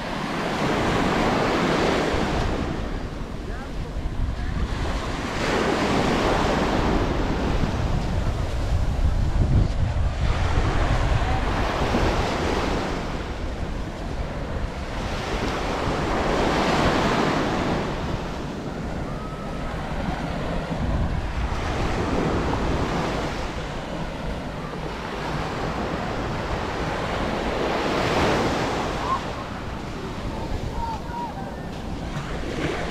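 Small waves breaking and washing up a sandy beach, surging and fading every few seconds, with wind rumbling on the microphone.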